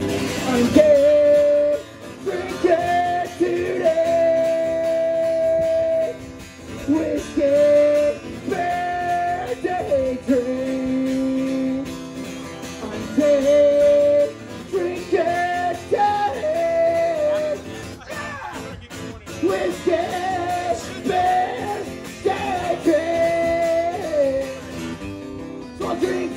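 A man singing a song live over his own strummed acoustic guitar, holding several notes for a few seconds each.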